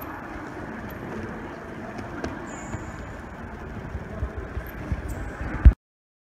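Busy hall ambience of a wrestling warm-up: a steady hubbub with soft thuds of feet and bodies on the mats and a few brief high squeaks. The thuds come more often toward the end, and the sound cuts off abruptly after a louder thump shortly before the end.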